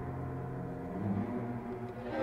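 A quiet, dark passage of a horror film score: low sustained droning notes with a fading gong-like ring, and a new low note entering about a second in.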